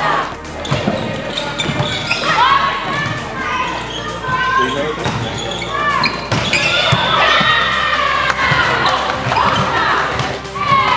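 Live sound of a girls' volleyball match in a sports hall: high-pitched shouts and calls from the players, with thuds of the ball being hit and bouncing on the court floor.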